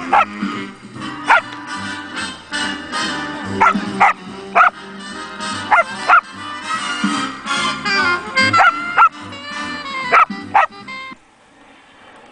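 A song with a steady bass line plays while a dog barks again and again, about once a second. The music stops about a second before the end.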